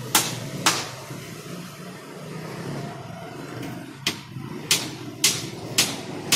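Sharp clicks or knocks about half a second apart: two near the start, a pause, then four more in the last two seconds. A low steady hum runs underneath.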